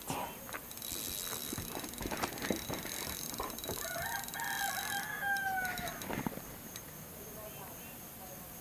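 A rooster crowing once, one long call of about two seconds that starts about four seconds in and dips at its end. Under it a steady high insect drone runs and stops about five seconds in.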